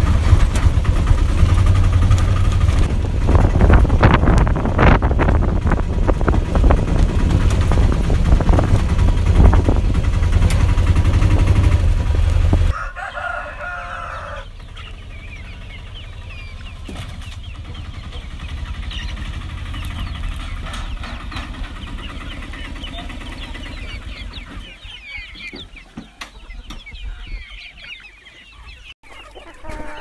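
An auto-rickshaw's small engine running loudly with rattling, heard from inside the cab on a rough dirt track. After about thirteen seconds it cuts off suddenly, and a native chicken flock takes over: a rooster crows once, then quieter clucking with small birds chirping.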